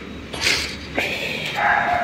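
A short hiss and a click, then a thin, high whine that starts about halfway through and holds steady.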